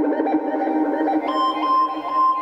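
Sylenth1 software synthesizer lead patch playing sustained notes over a fast rippling figure, moving up to a higher held note a little over a second in.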